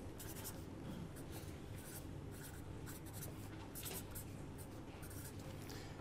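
Pen writing on paper: a run of faint, short scratchy strokes.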